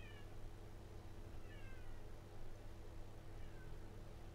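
Three faint, short animal calls sliding down in pitch, spaced roughly a second and a half apart, over a steady low hum.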